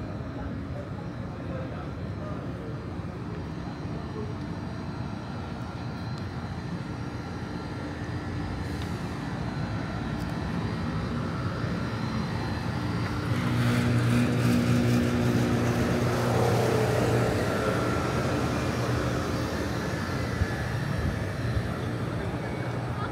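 City street traffic: a steady rumble of vehicle engines, with one heavy engine growing louder about halfway through and then easing off.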